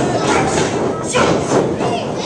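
Thuds from two professional wrestlers fighting in a ring, bodies hitting each other and the ring, the strongest about a second in, over voices in a hall.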